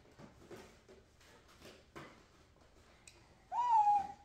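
Faint rustling and light knocks, then near the end a young child lets out a loud, high-pitched held "ooh" that bends up at its start.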